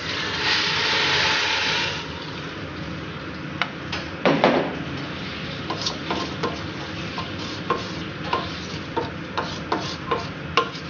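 Warm water poured from a plastic jug into a stainless steel pot of rice and onions frying in oil, a loud rush that lasts about a second and a half; then a wooden spoon stirring the rice and water, clicking and knocking against the pot many times, with one heavier knock about four seconds in.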